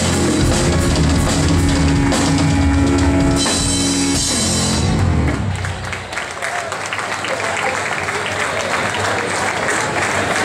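Live rock band of electric guitar, bass and drum kit playing the final bars of a song. The music stops about halfway through, and applause follows.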